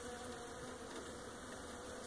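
Honeybees buzzing steadily over an opened hive, a colony stirred up by a cold-weather inspection.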